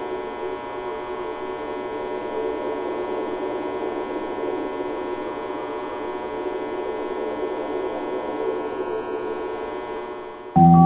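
A steady electrical hum with many overtones that holds unchanged and eases slightly near the end.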